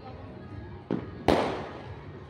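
Two firework bangs a little under half a second apart, the second much louder, its sound fading away over about half a second.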